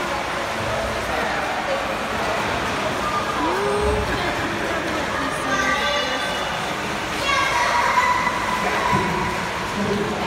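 Indoor swimming pool hall din: a steady echoing wash of noise with indistinct distant voices and a few calls, louder about halfway through and again near the end.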